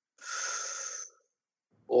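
A single breath of about a second, a breathy hiss close to the microphone, as a man draws breath before answering a question.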